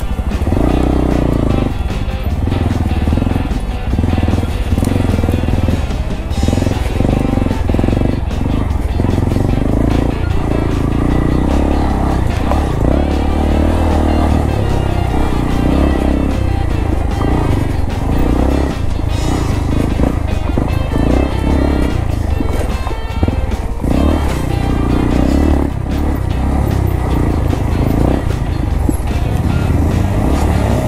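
Background music playing over a Honda Grom's small single-cylinder engine running as it is ridden along a dirt trail.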